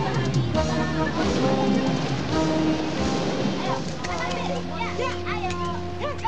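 Soundtrack music, then from about three and a half seconds in a jumble of many short voices calling and chattering over a held low note, like children at play.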